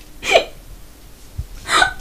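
A woman sobbing: one short hiccuping catch in the voice about a third of a second in, then a quick sobbing breath just before she speaks again.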